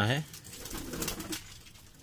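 Domestic pigeons cooing softly and low in a loft.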